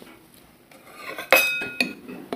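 A metal serving spoon clinking against a bowl: soft scraping, then a sharp ringing knock about 1.3 seconds in and a smaller knock half a second later.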